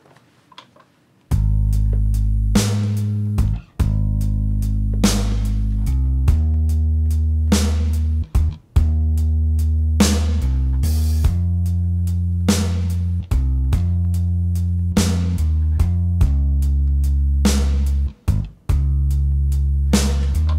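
Sampled electric bass from a MIDI virtual instrument playing a groove in time with a drum kit, starting about a second in. The bass notes are sustained and deep, with sharp drum hits landing about every two and a half seconds.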